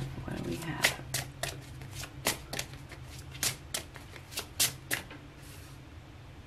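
A tarot deck being shuffled by hand: a run of about fifteen quick, sharp card snaps, roughly three or four a second, stopping about five seconds in.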